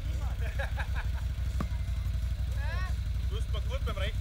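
Quad (ATV) engine idling with a steady low rumble.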